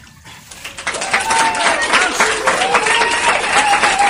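Muddy water splashing and sloshing as men wading in a flooded ditch heave a concrete slab out of it, starting loudly about a second in, with voices calling out over it.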